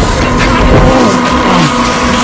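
Film sound mix of heavy rain and surging, churning water, loud and continuous, with steady held tones of the film score underneath.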